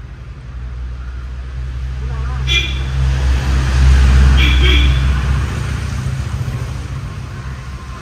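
A road vehicle passing by: a low engine and road rumble that swells to its loudest about four seconds in and then fades away.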